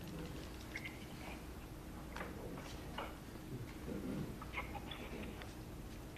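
Quiet meeting-room tone with a few faint, scattered clicks and soft, faint murmurs.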